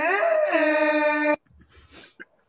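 A web soundboard sound clip playing one long, loud wailing cry on a held pitch. It steps up slightly about half a second in and cuts off abruptly after about a second and a half.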